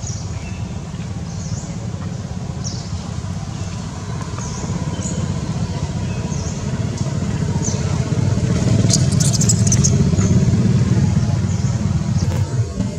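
Steady low engine-like rumble, as of motor traffic, swelling louder in the second half. Short high chirps repeat about once a second over it.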